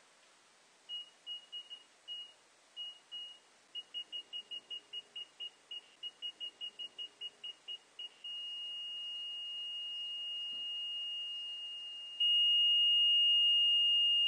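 Small piezo buzzer powered by a homemade lime-juice battery, giving a high single-pitched beep. It comes first in irregular short bursts, then about four to five beeps a second as the lead is tapped on and off the contact. About eight seconds in it settles into a steady tone once the connection is held, and about twelve seconds in the tone jumps clearly louder, with the buzzer now run from the lemon-juice battery.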